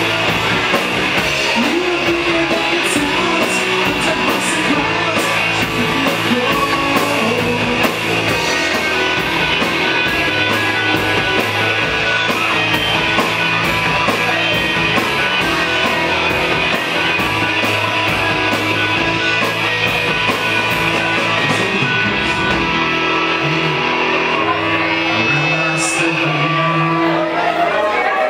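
Live rock band playing: electric guitars, bass and drums with a singer, cymbals keeping a steady beat. A few seconds before the end the drums and low bass drop out and the guitars carry on ringing as the song winds down.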